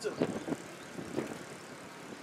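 A pause in amplified speech: faint, steady outdoor background noise, with the tail of a spoken word at the start and a few faint short sounds in the first second.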